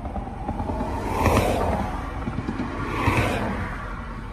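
Road noise inside a moving car: a steady low rumble with two whooshes of rushing air, one about a second in and another around three seconds.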